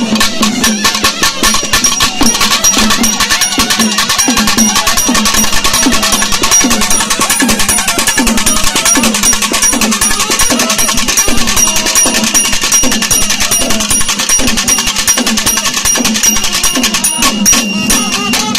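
A live nadaswaram and thavil band playing fast and loud. Thavil drums beat a rapid, dense rhythm under the nadaswaram's reedy melody.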